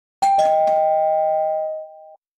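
A two-note ding-dong chime like a doorbell: a higher note and then a lower one a fraction of a second later, both ringing on and fading away over about a second and a half.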